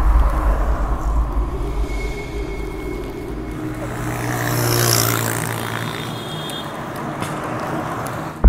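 Road traffic noise with a low rumble. One vehicle passes, swelling to its loudest about five seconds in and then fading.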